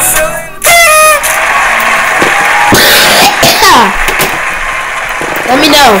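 Music with a voice over it, played back from a video: a song cuts off less than a second in and other music takes over, with a few falling swoops in the middle.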